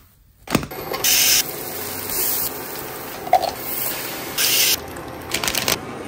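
Kitchen cooking sounds: three short bursts of loud hissing with sharp starts and stops, with clicks and knocks between them.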